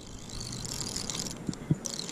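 A children's My Little Pony spincast reel being cranked to bring in a hooked crappie, its small plastic gears whirring, with two brief knocks about a second and a half in.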